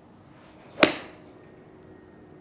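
A 7-iron striking a golf ball, one sharp crack a little under a second in with a short fading tail. The contact is fairly clean, slightly toward the heel.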